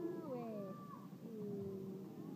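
A voice making long, drawn-out sounds that slide down in pitch, one after another.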